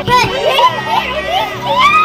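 Young girls' voices shrieking and laughing in rough play, high and excitable, with quick swoops in pitch.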